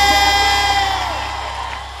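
A female singer holds the last note of a live song, which falls away about a second in. Underneath, the band's low sustain fades out and a crowd cheers.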